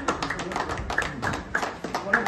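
A small group clapping irregularly, with voices mixed in.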